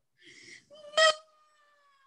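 A woman's breathy gasp, then a sudden loud, theatrical wailing cry about a second in that trails off into a long, faint wail falling slowly in pitch.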